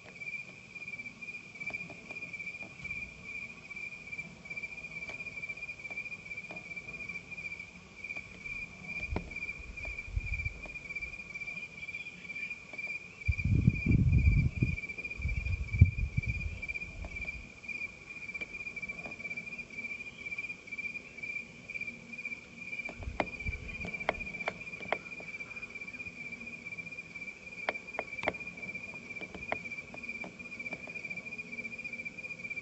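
Crickets chirping steadily in one high, fast-pulsing trill. Low rumbling bursts come about a third of the way in and again in the middle, the loudest part. A few sharp clicks follow near the end.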